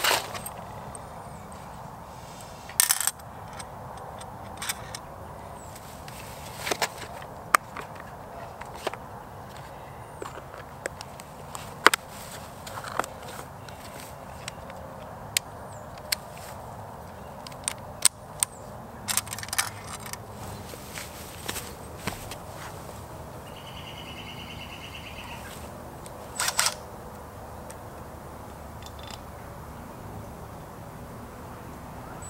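Screws and drill bits clinking and plastic parts-organizer and bit-case lids clicking while a cordless drill is fitted with a bit: a string of scattered sharp clicks and clatters, irregularly spaced. A brief high buzzing tone sounds about three-quarters of the way in.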